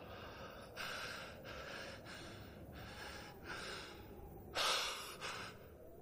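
A person breathing heavily: a run of short breaths about every two-thirds of a second, then a louder, sharper gasp about four and a half seconds in.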